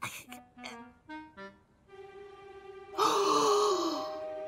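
Cartoon soundtrack music: a few short pitched notes, then a held chord. Near the end a loud, gravelly groan comes in over the music.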